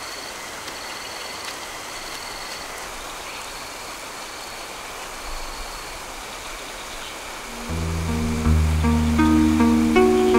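Steady rushing forest ambience with faint high chirps repeating every second or so. About three-quarters of the way through, low sustained bowed-string music comes in and builds, becoming the loudest sound.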